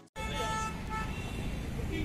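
City street traffic: a steady mix of car, motorbike and auto-rickshaw engines going by, with a vehicle horn sounding faintly in the first second.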